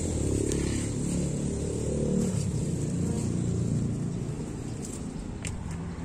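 A motor vehicle's engine running, a low rumble that fades after about four seconds, with a few light clicks near the end.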